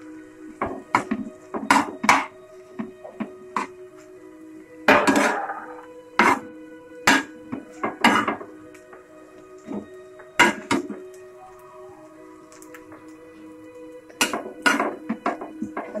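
Metal spatula scraping and tapping against a nonstick frying pan while a thick potato-and-chickpea mixture is stirred and pressed, in irregular clicks and scrapes with a longer scrape about five seconds in and a flurry near the end. Steady background music plays underneath.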